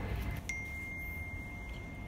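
Smartphone text-message notification: a single high chime about half a second in that rings on steadily for more than a second, announcing an incoming message, over a low background hum.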